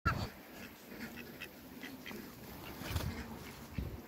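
Muscovy ducks during mating: short, soft chirping calls repeated every half second or so, with a few low thumps.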